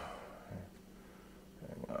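Quiet room tone with a faint steady low hum between words, and a small soft knock about half a second in; speech resumes near the end.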